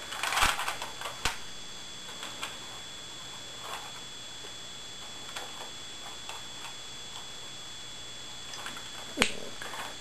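Faint handling noise: a few scattered small clicks and rubs, the loudest cluster at the very start and a sharper click just before the end, over a steady faint high-pitched whine.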